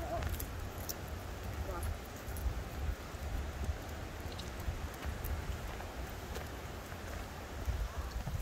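Faint footsteps of people and dogs walking on a paved path, with scattered light clicks over a steady low rumble of wind on the microphone.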